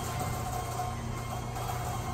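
Garage door opener motor running steadily as the door rises, a constant hum under an even mechanical rumble.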